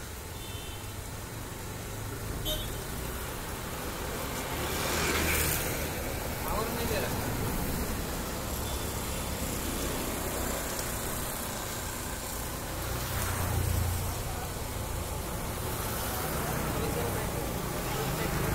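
Electric hydraulic power pack running steadily, its pump driving a hydraulic cylinder's rod in and out, over a background of traffic and voices.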